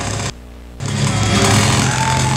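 Soundtrack of a glitch-art performance video played back in the room: a harsh, dense wash of noise over steady low droning tones. It cuts out suddenly for about half a second near the start, then comes back.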